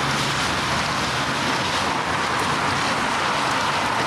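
Steady, even rushing noise of outdoor street ambience, with a low hum in the first half second.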